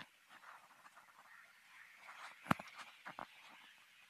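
Plastic trim-panel clips being handled and pressed into their holders: faint scratching, then a sharp click about two and a half seconds in and two lighter clicks just after three seconds.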